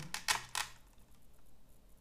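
A few quick plastic clicks as hands detach a small telemetry module from a quadcopter's plastic shell, then fainter handling.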